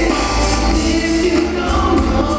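Live R&B band music: electric bass and guitar playing under several voices singing together, with a steady, heavy low end.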